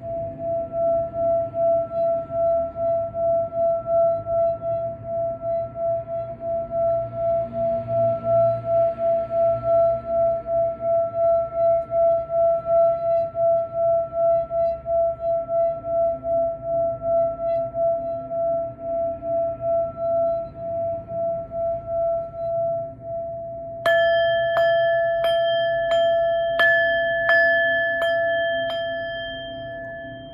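Tibetan singing bowl rimmed with a wooden mallet: a steady singing tone that pulses evenly in loudness. About 24 seconds in, the bowl is struck about eight times in quick succession, ringing brighter with higher overtones, then fading.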